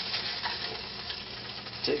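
Hamburger patty and Spam slice frying in oil in a nonstick pan, a steady sizzle, while a plastic spatula scrapes under the patty to lift it out.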